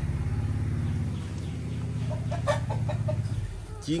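A fighting cock clucking, a quick run of short clucks about two seconds in, over a steady low engine hum.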